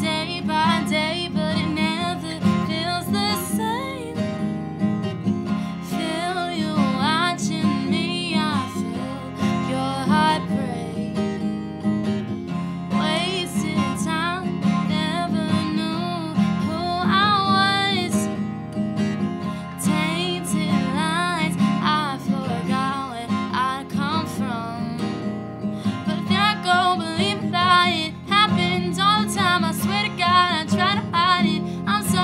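A woman singing a song while strumming a Yamaha acoustic guitar.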